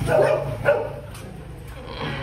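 A dog barks twice, short and sharp, about two-thirds of a second apart, over a low steady hum.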